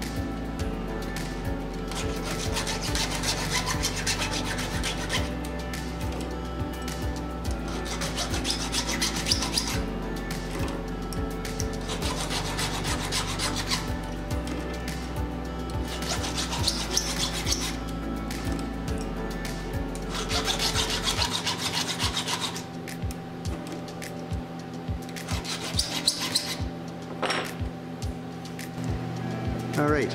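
A flat file rasping across a chainsaw chain's depth gauges (rakers), lowering them, in about six runs of quick strokes with short pauses between. Background music plays underneath.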